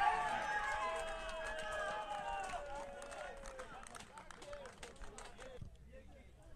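Several people shouting at once during a football match, loudest at the start and dying away over about three seconds, with scattered sharp clicks.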